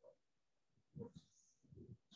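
Near silence: room tone, with two faint, brief sounds, one about a second in and one near the end.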